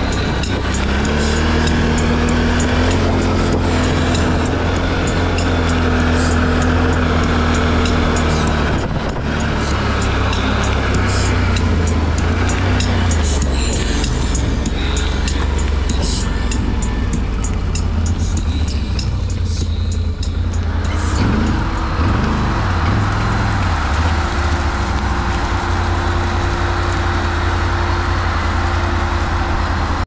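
ATV engine running steadily as the quad is ridden over rough, stubbly ground, with frequent small rattles and knocks from the machine bouncing. The engine note rises and falls with the throttle, with a few quick revs about two-thirds of the way in.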